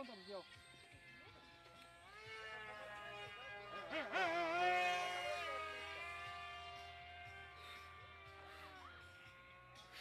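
Electric motor and propeller of a foam radio-controlled Su-37 model jet in flight, a steady whine that rises in pitch about two seconds in as the throttle opens. It wavers and is loudest around four seconds in as the plane passes, then fades and falls in pitch near the end.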